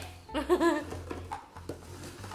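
A young child's brief vocal sound, then a few light clicks as hard plastic stacking rings are handled, over soft background music with a steady bass line.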